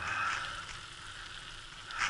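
Bicycle with knobbly tyres rolling along asphalt: a steady hiss of tyre and drivetrain noise that swells at the start and again at the very end.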